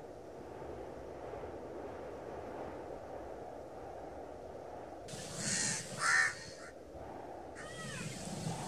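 A steady low outdoor rumble, with two loud, harsh animal calls about five and six seconds in and another call starting near the end.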